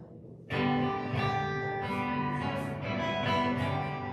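A praise band's guitars strumming chords, the song's intro starting suddenly about half a second in with a steady rhythm.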